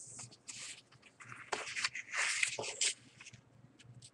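A sheet of origami paper being handled and folded: irregular rustles and crinkles, loudest about two seconds in.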